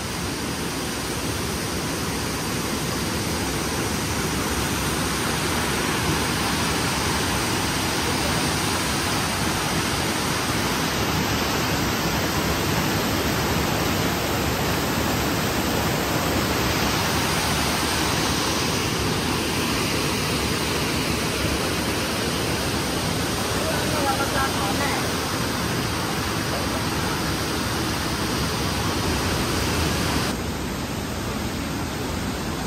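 A waterfall cascading over rocks and a swollen, fast river below it, running in high rainy-season flow: a loud, steady rush of water.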